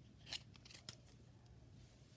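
Faint handling of a cardboard hang tag on a plush toy, fingers rubbing and flicking the card: a sharp tick about a third of a second in and a softer one a little later.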